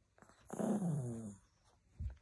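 A small dog's single drawn-out vocal sound, about a second long and falling in pitch, starting about half a second in.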